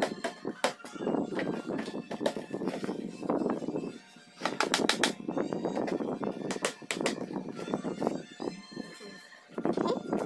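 Sharp clicks and knocks of a plastic lid and its stacked tiers being handled and pressed into place, over background music.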